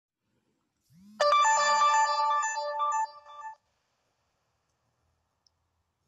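Smartphone ringtone: a bright melody of several notes lasting about two and a half seconds, opening with two brief low hums.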